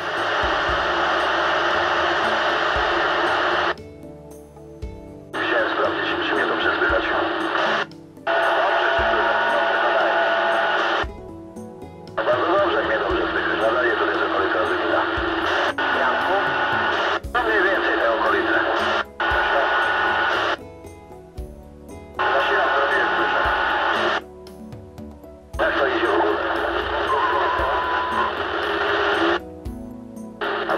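President Harry III CB radio on AM channel 19, playing received CB voice traffic through its speaker. The transmissions come in noisy, tinny bursts a few seconds long, each starting and stopping abruptly with short quieter gaps between them, as the automatic squelch opens and closes.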